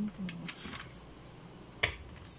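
A black handheld grinder being handled: a few light clicks, then one sharp knock near the end as it is set down on the countertop.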